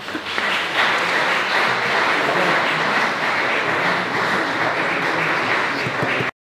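Audience applauding, dense steady clapping that swells over the first second and holds steady.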